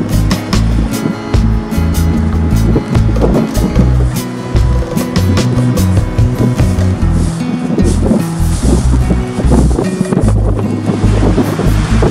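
Strong gusty offshore wind buffeting the microphone with a loud, uneven low rumble, under background music.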